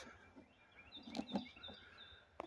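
Faint short bird chirps, several in the second half, over a quiet background, with a couple of brief rustling thumps about a second in, the loudest sounds.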